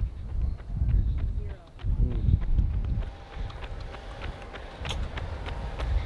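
Gusty wind rumbling on the microphone over the quick, light patter of running footsteps on asphalt.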